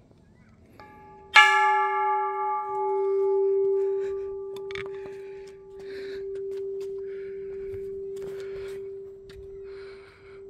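Small hanging Japanese temple bell (bonshō-style) struck once with its wooden log striker about a second in: a bright clang whose higher ringing dies away within a few seconds, leaving one steady low hum that rings on, slowly swelling and fading.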